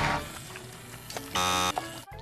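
A game-show buzzer: one short, loud electronic buzz of about half a second, about one and a half seconds in. It follows a burst of music that cuts off at the start.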